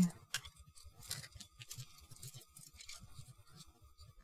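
Faint clicks and rustling of hard plastic model parts being handled, as a large plastic gun is worked into a model robot's hand.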